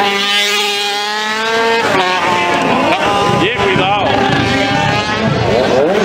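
Motorcycle engine revving hard and holding a high, steady pitch for about two seconds before dropping away, followed by crowd chatter.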